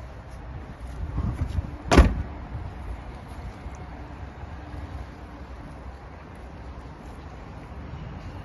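Audi A3 Sportback hatchback tailgate being shut: one loud slam about two seconds in, just after a brief rustle of it being pulled down. A steady low background rumble runs throughout.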